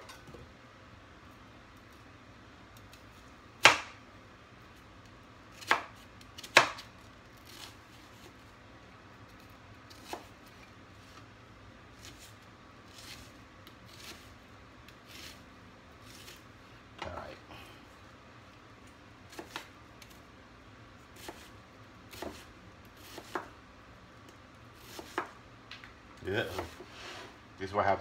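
Chef's knife cutting an onion on a plastic cutting board: separate, irregular knocks of the blade hitting the board. The loudest come about four and six seconds in, followed by lighter, scattered taps.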